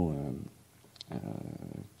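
A man's drawn-out hesitation 'euh', falling in pitch, then a brief pause with a faint click about a second in, followed by a quieter drawn-out pitched voice sound before speech resumes.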